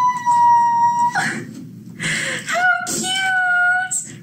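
A woman's two long, high-pitched squeals of excitement: the first held steady for about a second, the second starting about two and a half seconds in with a short upward slide, then held to the end.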